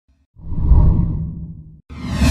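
Intro whoosh sound effect: a deep swoosh that swells up about a third of a second in and fades away, cut off just before a second swoosh begins near the end.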